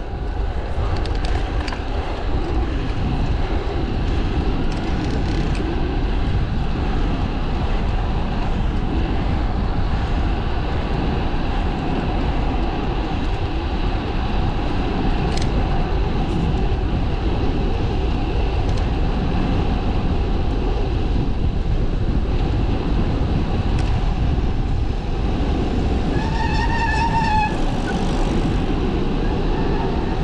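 Steady rumble of wind and rolling noise from a moving bicycle on a paved road, heard from a bike-mounted camera. Near the end a short high-pitched whine with overtones rises above it for about two seconds.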